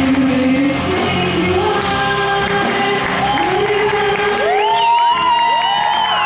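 Live rock band with two female singers: drums, bass and electric guitar under the voices until about three seconds in, when the band drops away and the singers hold long high notes. An audience starts cheering near the end.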